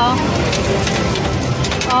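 Plastic candy wrappers rustling and crinkling as a handful of wrapped sweets is scooped out of a candy pusher's prize chute, many small crackles one after another, over arcade background noise.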